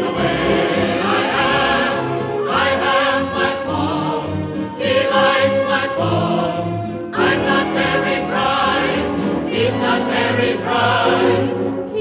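Music from a 1940s Broadway show-tune recording: an orchestral passage between the sung verses, the melody carried with a wide vibrato over a rhythmic bass line.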